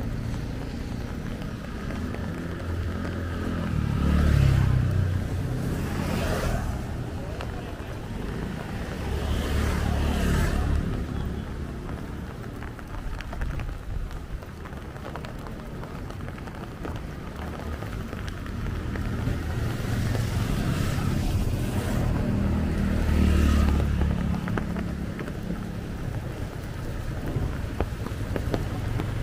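Motorcycles and scooters passing on a wet road, their engines and tyre hiss swelling and fading, louder around four, ten and twenty-three seconds in, over a steady low traffic rumble.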